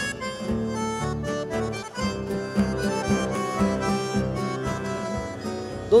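Instrumental chamamé passage: a button accordion plays the melody over low plucked guitarrón bass notes and light drum and cymbal strokes. A singing voice comes in right at the end.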